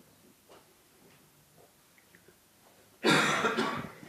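Quiet lecture-hall room tone, then about three seconds in a single loud cough, sudden and lasting just under a second.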